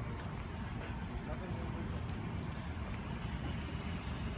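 Outdoor street background noise: a steady low rumble of road traffic.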